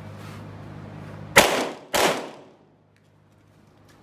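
Two handgun shots fired about half a second apart, each followed by a short ringing echo.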